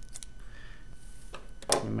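Scissors snipping through a thick wad of folded paper: a few sharp clicks near the start and one more about a second and a half in.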